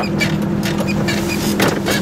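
Goggomobil's air-cooled two-stroke twin engine running at a steady low speed while the small car drives, heard inside the cabin, with frequent short knocks and rattles over the engine hum.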